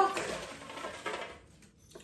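Folded paper slips rustling against each other and the sides of a clear plastic container as a hand rummages through them, dying away after about a second and a half.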